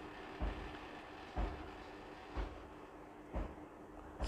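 A steam iron being worked over cotton print fabric, faint, with soft, even thumps about once a second.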